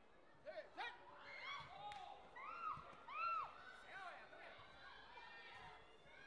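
Several voices shouting short calls that rise and fall in pitch, overlapping one another over faint background chatter, with a single sharp knock about two seconds in.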